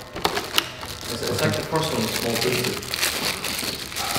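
Clear plastic packaging crinkling and rustling as a wrapped clipper accessory is handled and pulled from its box, with a few sharp clicks and taps in the first second.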